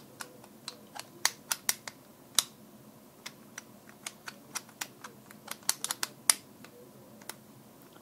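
Plastic pieces of Aleksandr Leontev's 205 Minute Cube, a sequential-movement puzzle cube, clicking and knocking as they are slid in and out by hand: a string of irregular sharp clicks, the loudest a little after a second in, around two and a half seconds, and near six seconds.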